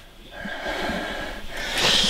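A man's heavy, noisy breathing through bared teeth, getting louder near the end.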